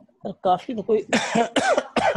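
Indistinct voices speaking, with a cough about a second in.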